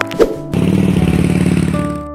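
Motor scooter engine sound effect starting about half a second in and running with a fast, even putter over steady background music.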